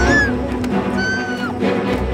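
A woman screaming for help, two high-pitched cries, the first right at the start and the second about a second in, over tense background music.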